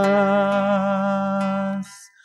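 Music: a voice holds one long note with a slight vibrato, in a song accompanied by acoustic guitar; the note stops shortly before the end.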